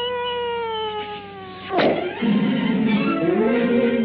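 Cartoon soundtrack: a long held wailing note that slowly sinks in pitch, cut off by a sharp crack just under two seconds in, then orchestral cartoon music with a rising melody.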